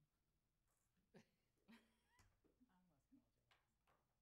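Near silence: open-microphone room tone, with a few very faint, brief voice-like sounds and soft clicks.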